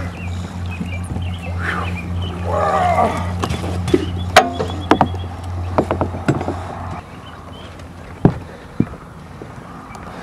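A large blue catfish in a landing net is hauled aboard a fishing boat, with knocks and clatter as the net frame and fish hit the deck, and a man's strained grunts early on. A steady low hum runs beneath until it stops about seven seconds in, and a couple of single thumps follow.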